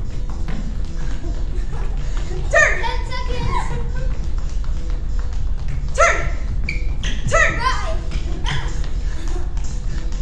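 Rapid light footfalls of people doing a quick-feet drill, with short shouted exclamations about two and a half, six and seven and a half seconds in, over background music.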